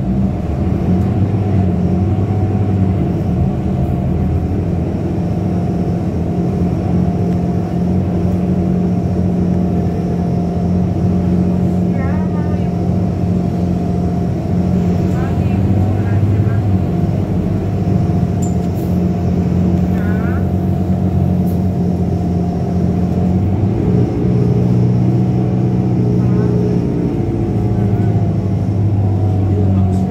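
Steady engine drone of a city bus heard from inside the cabin as it drives along, with brief faint voices at times.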